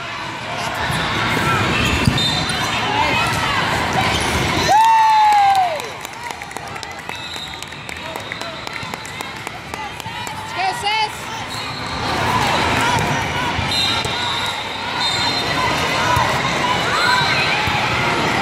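Indoor volleyball game sounds in a large, echoing hall: sneakers squeaking on the court, ball contacts and players and spectators calling out. About five seconds in, a loud tone falls in pitch over about a second.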